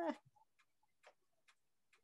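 Faint computer-mouse clicks, four of them about half a second apart, after a laugh trails off at the very start.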